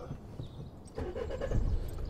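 A car engine starting about a second in, then running at idle with a steady low rumble, heard from inside the car.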